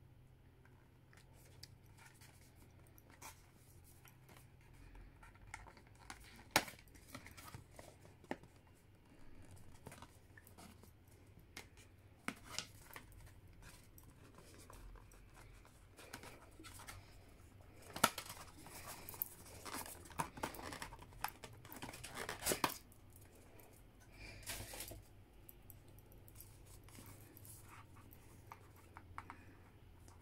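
Faint rustling and scraping of cardboard and tissue-paper packaging as a perfume box is opened and its contents lifted out, with scattered sharp clicks and a busier stretch of rustling a little past the middle.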